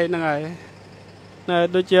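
A person speaking, breaking off about half a second in and starting again after a pause of about a second, over a faint low steady background.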